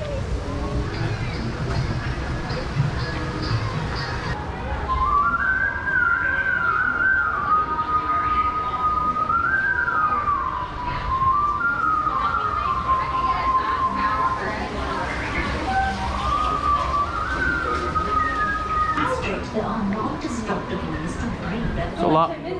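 A person whistling a slow tune, one clear melody line that starts about four seconds in and stops a few seconds before the end, over background chatter.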